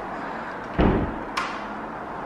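Locked interior door's lock being worked with a makeshift tool in its release slot to get it open: a dull thump a little under a second in, then a short sharp click.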